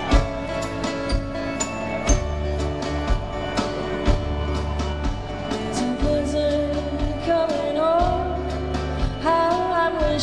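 Live band playing a slow country song, with drums keeping a steady beat under bass and guitar. A woman's lead vocal comes in about halfway through.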